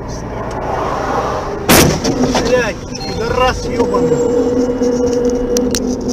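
A car's engine running louder, then a single loud bang about two seconds in, followed by shouting voices and a steady held tone.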